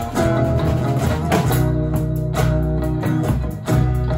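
Live acoustic and electric guitars playing an instrumental passage without vocals, sustained chords with a strum about a second and a half in and another near the end.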